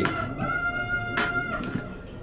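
Music: a held high note over a shorter lower note, with a sharp click about a second in.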